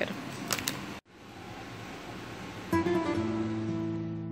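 Acoustic guitar music starts near the end with a strum, its plucked notes ringing on over a low room hiss. Before it, a couple of sharp clicks come just ahead of a sudden cut to near silence.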